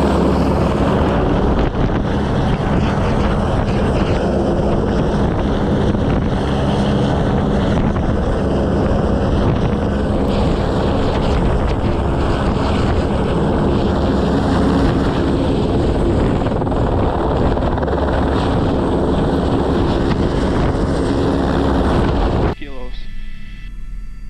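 Airbus H125 helicopter hovering overhead, heard from a camera on the long-line hook beneath it: a loud, steady rotor and engine sound with rotor-wash wind buffeting the microphone. It cuts off abruptly near the end.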